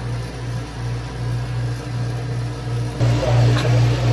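Low, steady motor hum that wavers in level, growing louder about three seconds in.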